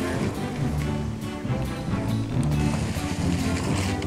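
Background music with held notes.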